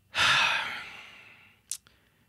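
A man's long, weary sigh, loudest at the start and trailing off over about a second and a half, followed by a brief lip click.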